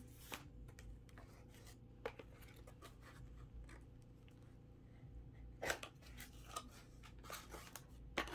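Faint rustling and handling of a diamond painting kit's canvas and packaging, a scatter of small crinkles and taps that grows busier and louder over the last couple of seconds.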